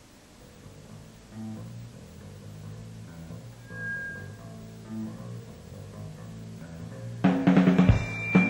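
A live band starts its set: a quiet, slowly swelling intro of sustained low notes, then the full band with drum kit comes in loudly near the end.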